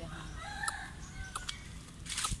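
A bird calling: a couple of short pitched notes in the first second and a half, with a few sharp clicks among them.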